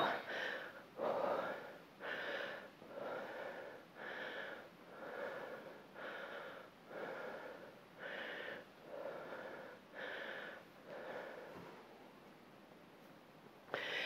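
A woman breathing hard and rhythmically through her mouth from exertion, about one breath a second, while doing dumbbell reverse lunges. The breaths fade out about twelve seconds in.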